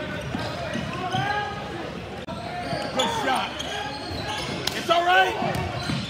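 A basketball game on a hardwood court: a ball bouncing, sneakers squeaking and voices calling out across the gym. A couple of sharp thumps about five seconds in are the loudest sounds.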